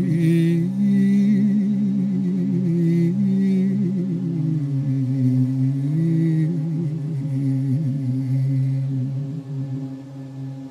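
Georgian folk song sung by several voices in harmony over a steady low drone, long held notes with a slow wavering vibrato.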